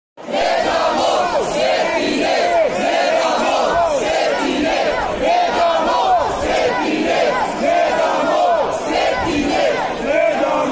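Large crowd of protesters yelling and shouting at once, many voices overlapping in a steady, loud din.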